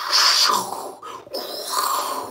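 A man's voice making a breathy whooshing sound effect, twice, as a vocal imitation of a fireball streaking across the sky.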